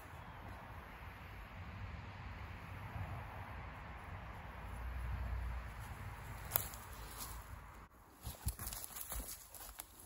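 A knife cutting a clump of chicken-of-the-woods shelf fungus from the base of a dead tree while it is pulled free by hand, with handling rustle. There is a sharp click about six and a half seconds in, and a scatter of short knocks and snaps near the end.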